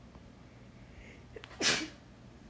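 A person sneezing once, a short, loud burst near the end of an otherwise quiet stretch.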